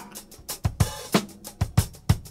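Acid jazz drum break: a drum kit playing a steady beat of kick, snare and cymbal hits, about four or five a second, with the other instruments dropped out.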